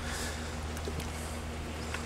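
A steady low hum with faint background hiss.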